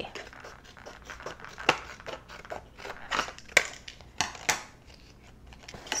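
Scissors cutting apart a thin plastic Popin' Cookin' candy-kit tray: several sharp snips with scratchy rustling of the plastic between them.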